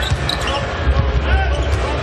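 A basketball being dribbled on a hardwood court, a series of short bounces over the steady noise of an arena crowd, with a few short high squeaks.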